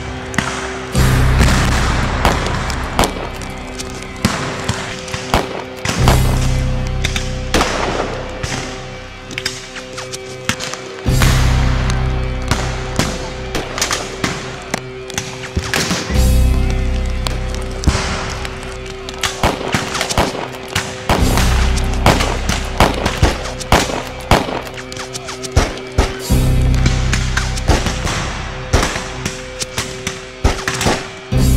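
Film score with steady held tones and a deep swell about every five seconds, under scattered cracks of black-powder rifle fire in a battle.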